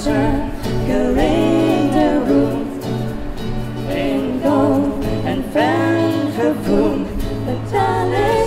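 A female voice singing a slow song, phrase by phrase, accompanied by an acoustic guitar.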